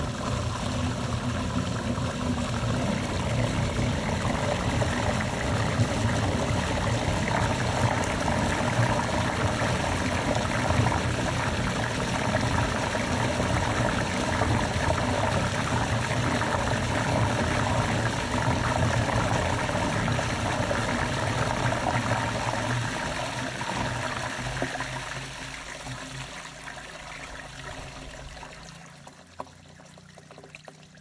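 A big flush of water rushing through a PVC drain line and running out along a dirt trench, testing that the line is clear. The flow dies away over the last several seconds.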